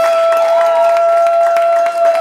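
Audience clapping and cheering as a live band's song ends, with one long high note held over it that drops away at the very end.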